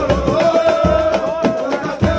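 Live samba de roda: voices hold one long sung note over a samba banjo's strumming, a pandeiro's jingles and slaps, and a low drum beat.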